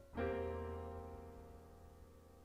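A piano chord struck once and left to ring, slowly fading, in an instrumental passage of a slow ballad with no singing.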